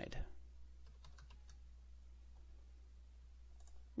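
A few faint keystrokes on a computer keyboard, scattered through the first half and once more near the end, over a steady low hum.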